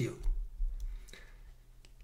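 A man's voice trails off at the start, followed by a quiet pause broken by two faint short clicks, about a second in and near the end.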